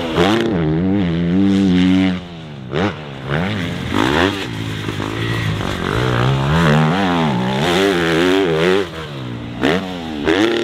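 A 250cc four-stroke motocross bike ridden hard on a dirt track. The engine revs rise and fall over and over as the rider works through the gears, with short dips where the throttle is shut over jumps and into corners.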